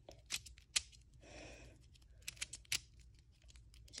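Miniature GAN 330 keychain cube being turned between the fingers: its small plastic layers give a few faint, sharp clicks, spaced irregularly, with a soft brush of handling noise between them.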